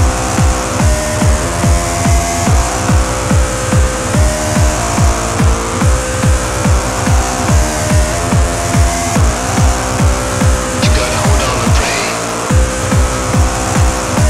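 Hard trance / hard house dance music: a steady four-on-the-floor kick drum at a little over two beats a second under held synth notes that step up and down in pitch. The kick drops out briefly near the end.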